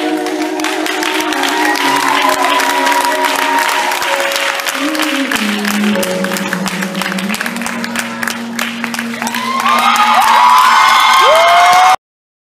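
An audience applauds and cheers over the held closing notes of a recorded song, with rising whoops near the end. The sound cuts off suddenly at the end.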